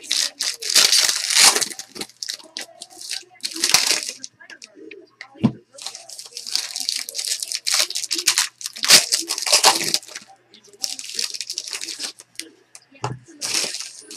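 A trading-card pack wrapper being torn open and crinkled by hand, in a run of short crackling bursts.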